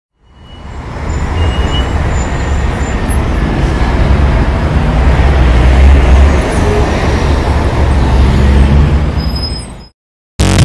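City traffic noise: a steady rumble of engines and road noise. It fades in over the first second and fades out just before the end.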